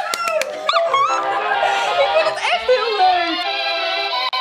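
A woman's excited high-pitched squeals and a few quick hand claps, with background music coming in after about a second and carrying on to the end.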